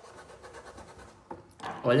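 Small round blending brush rubbing paint into fabric in quick, even, light scratching strokes that stop about a second in. A single short click follows, then a voice near the end.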